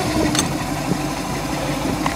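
OMC 230 Stringer 800 small-block Chevy 350 V8 idling steadily at a low idle, with a single click about half a second in. The carburetor idle is set a little too low.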